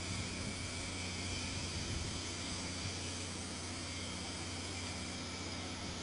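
Steady, even background hiss with a low hum underneath, unchanging throughout.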